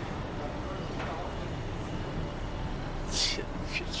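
Steady city street noise of passing traffic, with pedestrians' voices and a short sharp hiss about three seconds in.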